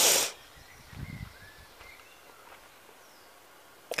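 Quiet outdoor background: a short rustling hiss at the start, a few soft low thumps about a second in, and faint bird chirps.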